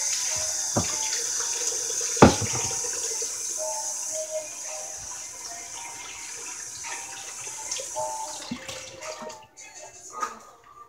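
A tap running into a sink while hands are washed under it, with one sharp knock about two seconds in. The water stops near the end.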